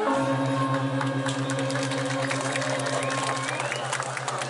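A large Balinese gong of a women's gong kebyar orchestra is struck right at the start and rings on as a low, evenly pulsing hum. The higher metallophone tones die away over it, and scattered sharp clicks sound from about a second in.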